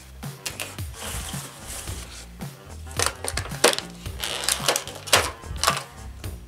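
Background music with a steady beat, over the handling noises of a cardboard headphone box being opened and its clear plastic tray and the headphones lifted out: scattered clicks and scrapes, sharpest about three and five seconds in.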